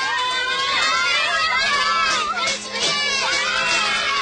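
A crowd of children's voices shouting and clamouring over one another, with a short lull about two and a half seconds in.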